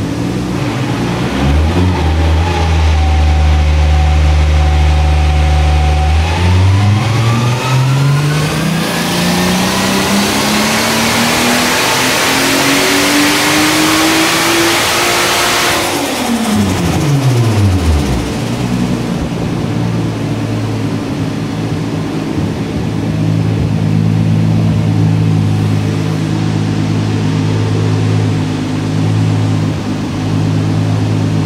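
Turbocharged VW VR6 six-cylinder on a Dynojet chassis dynamometer making a full-throttle power run. It holds steady at low revs for a few seconds, then the revs climb for about ten seconds, getting louder and rougher toward the top. The throttle is shut suddenly about halfway through, the revs fall away over a couple of seconds, and the engine runs steadily at low revs again.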